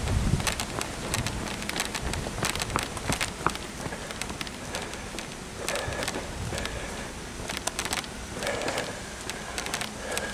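A person jogging on a paved trail while carrying the camera: footfalls and the knocking and rustling of the camera jostling in hand, over a rough hiss of air on the microphone, with many sharp irregular clicks.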